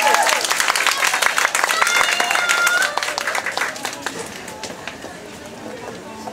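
Small live-house audience clapping and cheering as a song ends, with a few voices calling out. The applause dies away over about five seconds.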